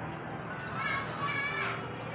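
Children's high-pitched voices calling out in play, from about a second in, over the general murmur of a busy outdoor plaza.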